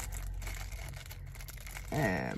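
Plastic packaging of a home COVID test kit rustling and crinkling in soft, scattered crinkles as the small pouch of test liquid is taken out by hand.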